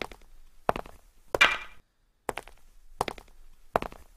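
A church beadle's staff and footsteps knocking on a stone floor: slow, measured knocks, about one every 0.7 seconds, six in all, one of them ringing on briefly.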